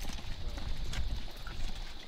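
Boots of a column of soldiers walking on a dirt road, irregular overlapping footfalls, with a low wind rumble on the microphone.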